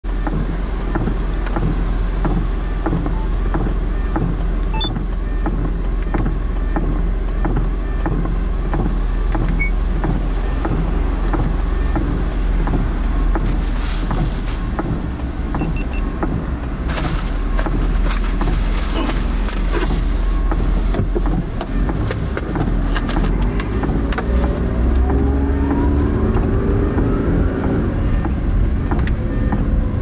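A car heard from inside its cabin: a steady low engine hum while it waits in traffic, then it pulls away about two-thirds of the way through, with a whine rising in pitch as it gathers speed.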